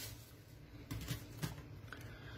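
Faint light taps and rustles of a wicker lid being set back on a wicker basket, a few soft clicks about a second in and near the end.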